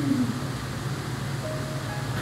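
Background music, with a steady low band and a few faint held tones, under the room's ambience.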